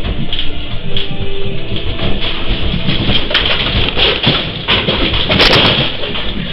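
A building rattling and creaking in strong earthquake shaking, with loose objects and fittings clattering continuously. The clatter grows busier, with its loudest knocks about three to five and a half seconds in.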